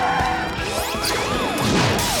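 Cartoon action sound effects over fast background music: several rising and falling zapping glides, then a louder crash-like hit with a falling sweep near the end.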